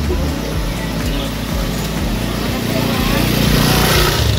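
Motorcycle engine approaching and passing close by, growing louder toward the end, with background music and voices underneath.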